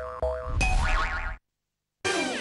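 Cartoon 'boing' sound effects of the Boing TV channel ident: short thumps and springy, bouncing pitch glides like a ball bouncing. The sound cuts off abruptly to dead silence after about a second and a half.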